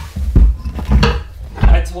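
Three dull thumps with light clatter between them: objects and wire clips being handled and knocked on a workbench.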